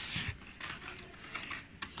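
A run of light, irregular clicks and taps, close to the microphone.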